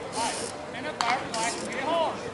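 Distant voices calling out across the field, with one sharp click about halfway through.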